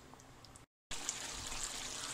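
Faint room noise, a brief cut to silence, then the steady faint hiss of a pot of curried chicken simmering on the stove over medium heat.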